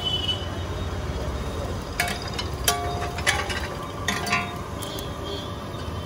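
A metal spatula clinking and scraping on a flat iron griddle, with half a dozen sharp metallic strikes that ring briefly, over a steady low hum.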